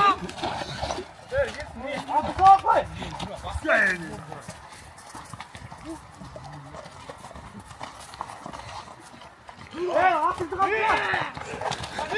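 Horses' hooves clopping on hard ground among the voices of riders and onlookers. The voices call out near the start and again near the end, and the middle is quieter.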